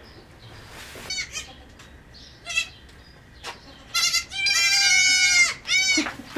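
Baby goats (kids) bleating in high, wavering calls while being carried: a few short bleats, then one long call about four and a half seconds in, the loudest, and another just before the end.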